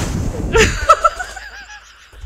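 People laughing in short breathy bursts that die away toward the end.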